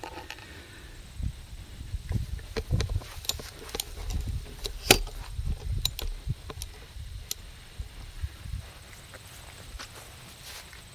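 Camera handling noise: low thumps and scattered light clicks and knocks as the camera is moved and set down, with one sharper click about five seconds in.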